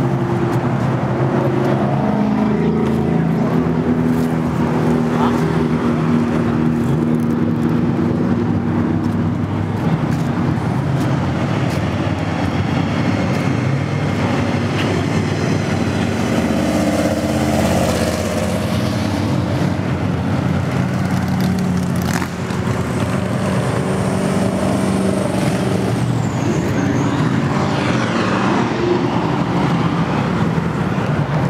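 Muscle-car engines running and cars driving past on the street, with people's voices mixed in.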